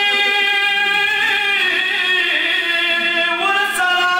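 Unaccompanied male voice chanting a drawn-out devotional recitation by Shia zakirs, holding long notes with slow slides in pitch.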